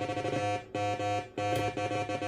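Buzzy electronic tone from a 4081 CMOS AND-gate circuit: a square wave of about 100 Hz switched on and off in a fast even pulse by a slower square wave from a signal generator. The tone drops out briefly twice.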